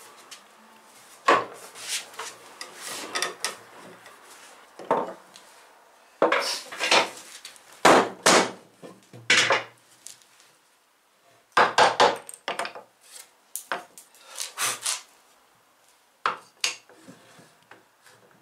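Irregular wooden knocks and clunks as wooden blocks and hand tools are handled, set down and knocked on a wooden workbench, some in quick clusters.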